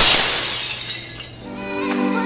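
A glass-shattering sound effect crashes in suddenly and dies away over about a second. Then outro music with steady held notes comes in about one and a half seconds in.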